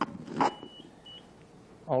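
Quiet room tone in a pause between speakers, with a faint, thin, high-pitched steady tone lasting about a second, then a man's voice starting near the end.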